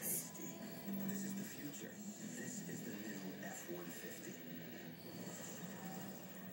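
Faint background speech and music, like a television playing in the room.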